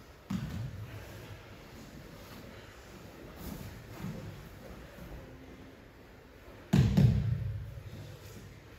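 Bodies hitting a padded dojo mat during aikido throws and pins: a soft thump just after the start, a few lighter bumps in the middle, and a loud thud of a partner falling onto the mat near the end.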